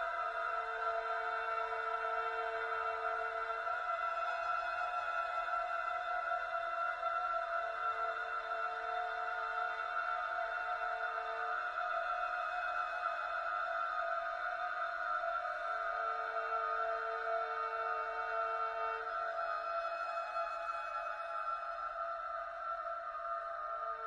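Solo violin holding long, steady high notes in a slow contemporary classical piece, with a lower note that comes back for a few seconds about every eight seconds.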